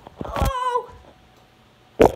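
A single short, high meow-like cry, about half a second long, wavering and dipping in pitch at its end. A thump from the camera being handled comes under it.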